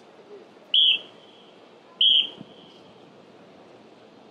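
Drum major's whistle blown twice in short, loud blasts about a second and a quarter apart, each a steady shrill tone: the cue to the marching band just before it starts playing.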